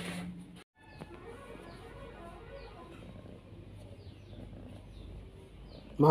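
Faint chirps of small birds: several short, high, falling notes spaced about half a second to a second apart, over a low background hum.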